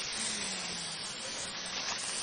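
Aerosol spray-paint can hissing steadily as black paint is sprayed onto a cloth sheet.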